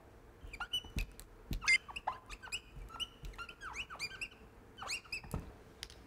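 Dry-erase marker squeaking on a whiteboard in a series of short strokes as words are written, with a few light knocks of the marker against the board.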